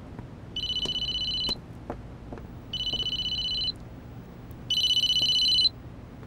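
Mobile phone ringing: three rings of about a second each, about two seconds apart, each a high electronic trill. The third ring is the loudest.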